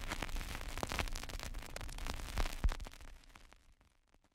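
Crackly, static-like noise with scattered clicks from the logo's sound effect, fading out about three and a half seconds in.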